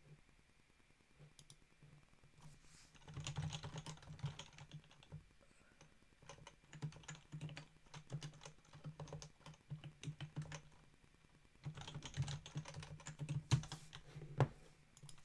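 Computer keyboard typing in quick runs of keystrokes, starting after a few quiet seconds, with a short pause a little before the end before the typing resumes.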